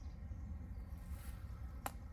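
Quiet outdoor ambience: a low wind rumble on the microphone, with one short sharp click near the end.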